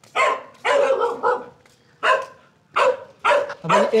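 Penned Samoyed dogs barking: a series of about seven short, sharp barks in quick clusters.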